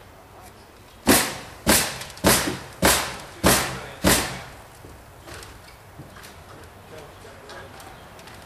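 Six hammer blows on wood framing, evenly spaced a little over half a second apart, each with a short ringing tail.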